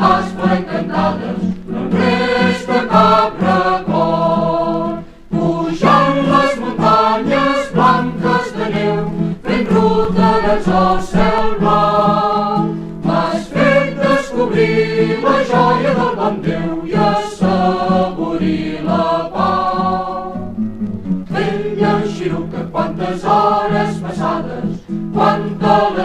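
A group of voices singing a folk song from a 1967 vinyl EP, over a steady low accompanying note. The sound dips briefly about five seconds in.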